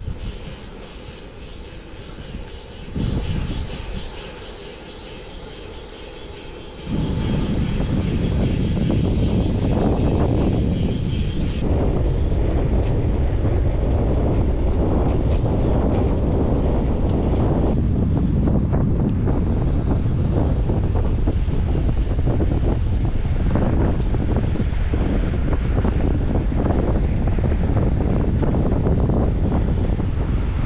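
Wind rumbling on the camera microphone while riding a bicycle: fainter for the first several seconds, then a loud, steady low rumble for the rest.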